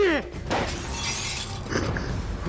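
A man's cry trailing off, then a wine glass smashing: a bright crash of breaking glass lasting about a second.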